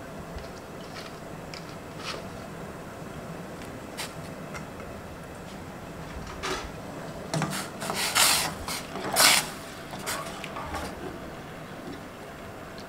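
Salted water heating in a steel pot on a stove: a steady low background with faint clicks, then several short scraping noises in the second half, the loudest about nine seconds in.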